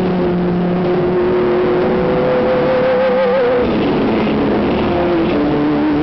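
Live band music led by electric guitar holding long sustained notes; one high held note wavers with vibrato about three seconds in, then gives way to new held notes.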